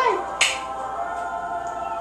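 A baby's kiss smack, one short sharp pop of lips against her hand about half a second in, over a song playing in the background.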